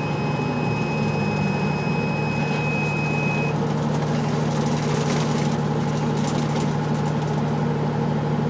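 Pramac GSW560V silenced diesel generator running with a steady drone. For about the first three and a half seconds a high steady beep sounds over it, the DST4601/PX controller's alarm buzzer signalling 'stop pressed in auto'.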